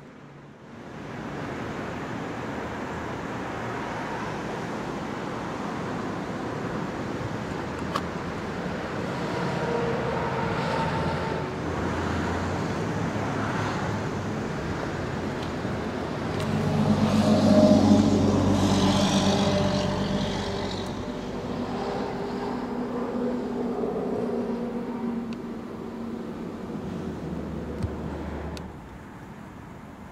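2015 Audi RS 7's twin-turbocharged V8 running, with a louder surge in revs about halfway through before it settles back to a steady idle.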